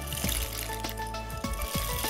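Background music with a steady bass line, over an even hiss of water heating in a pan.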